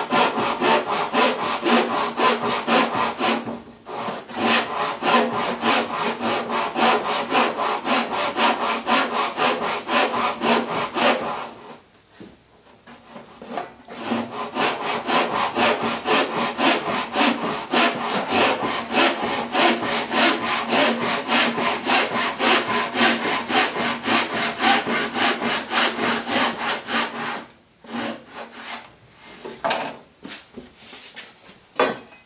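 A Japanese handsaw cutting through a glued-on wooden cleat to trim it flush, in quick even strokes about three a second, with three short pauses. The blade is an old, dull one, used because the cut goes through glue.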